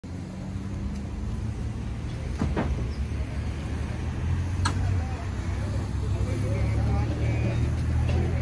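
Steady low rumble of road traffic, with faint voices in the background and a few short clicks.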